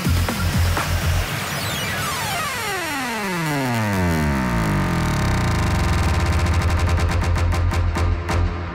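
Electronic dance music in a live DJ mix: a synth sweep gliding down in pitch over a few seconds, then a steady deep bass, with a roll of clicks that speeds up toward the end as a build.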